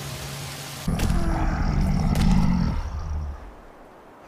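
A huge tiger-like beast's deep, growling roar. It starts suddenly about a second in and dies away after about two and a half seconds.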